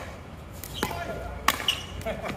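Pickleball paddles striking the plastic ball in a doubles rally: two sharp hits, one a little under a second in and a louder one about half a second later, with brief voices of players between them.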